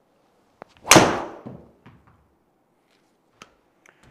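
A golf driver striking a ball off a tee: one loud, sharp crack about a second in, with a short ringing tail in a small room.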